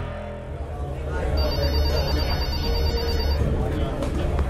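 A telephone ringing with a fast electronic trill for about two seconds, over a low music bed.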